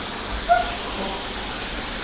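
Steady splashing of water from three sheer-descent waterfall spouts pouring into a koi pond.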